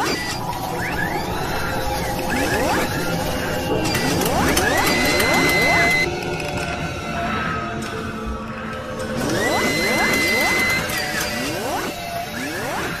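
Channel intro sting: music laid with mechanical sound effects for an animated robotic arm, with repeated rising sweeps, whirring and ratcheting, and a high tone held for about a second twice, near the middle and near the end.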